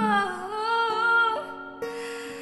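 A woman singing a long held note over acoustic guitar, her pitch dipping slightly and coming back; the voice stops about a second and a half in, leaving the guitar ringing.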